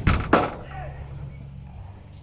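Padel paddle striking the ball in a rally, two sharp knocks about a third of a second apart, the second the loudest.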